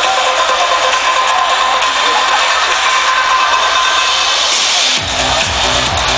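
Loud trance music over a club sound system, heard from within the crowd: a breakdown of held synth tones with no bass, until the bass and kick come back in about five seconds in.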